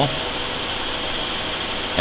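Steady background hiss with no distinct click or other event standing out.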